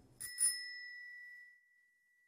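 Chrome bicycle bell rung with two quick strikes near the start, one clear ringing tone that fades out over about a second.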